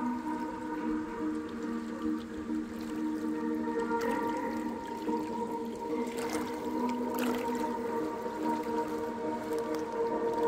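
Slow ambient music with long held notes over small lake waves lapping and splashing against shore rocks. A couple of louder splashes come around six and seven seconds in.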